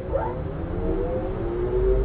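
Trolleybus pulling away: a low rumble under a motor whine that rises slowly in pitch.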